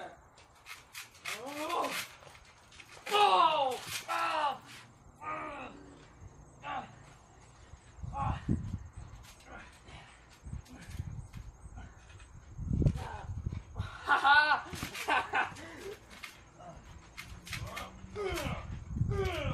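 Wordless yells and cries from two young wrestlers, loudest in the first few seconds and again near the end, over dull low thuds of bodies landing on a trampoline mat in the second half.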